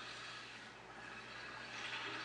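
A jeep heard faintly from inside its cab while driving through shallow water: a steady low hum with an even hiss.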